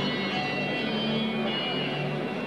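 Music with long held notes.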